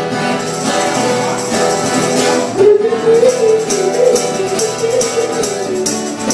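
Acoustic guitar strummed live with a tambourine jingling in a steady rhythm. A voice sings a long, wavering line from about halfway through.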